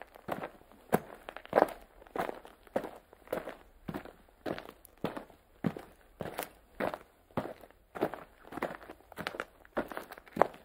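Slow, even footsteps, about one step every 0.6 seconds.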